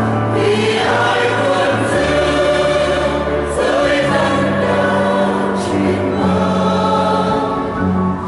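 Mixed church choir of women's and men's voices singing a Vietnamese Catholic hymn in parts, in long held chords.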